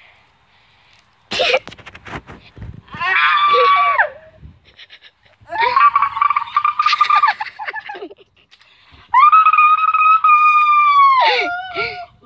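A person screaming three long, held screams of one to two and a half seconds each, the last one dropping in pitch at its end. The screams come from being spun fast on a saucer swing.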